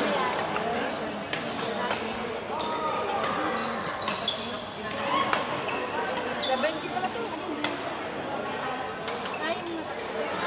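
Badminton rackets striking a shuttlecock during rallies: sharp, irregular clicks, some from neighbouring courts, over indistinct voices echoing in a large sports hall.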